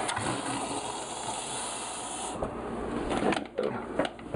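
Tap water running from a kitchen faucet into a hydration bladder as it is filled, a steady hiss that thins out a little past halfway and fades near the end, with a few light knocks of handling.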